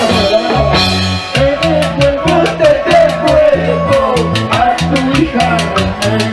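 Live band playing upbeat Peruvian dance music, huayno-cumbia style, through a stage sound system: a repeating bass line, an even quick cymbal beat several times a second and a gliding melody on top.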